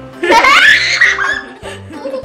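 A girl and a woman burst into loud laughter that rises sharply just after the start and dies away about a second and a half in, over background music with a steady beat.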